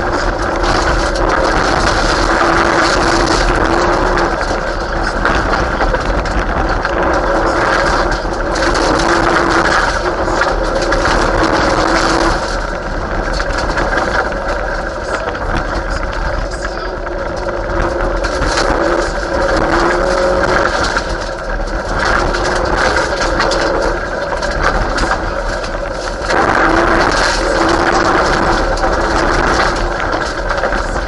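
Mitsubishi Lancer Evolution VII Group A rally car's turbocharged four-cylinder engine, heard from inside the cabin, revving hard and easing off repeatedly as the driver changes gear and lifts for corners. Tyre and gravel noise runs underneath it.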